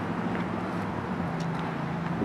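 Steady low mechanical hum over outdoor background noise.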